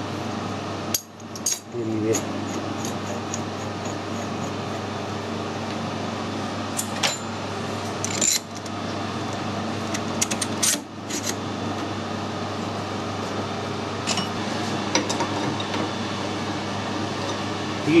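Sharp metal clinks and knocks as an ER40 collet chuck and collet holding a threaded steel rod are handled and fitted onto a metal lathe's spindle nose, a few scattered clinks over a steady machine hum.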